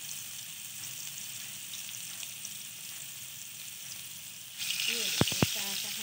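Chapli kebabs, minced-meat patties topped with tomato slices, sizzling steadily as they shallow-fry in hot oil. The sizzle turns suddenly louder about four and a half seconds in, followed by two sharp clicks.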